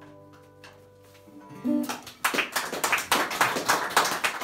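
The last notes of a resonator guitar and harmonica blues fade away, then, about two seconds in, an audience breaks into loud applause.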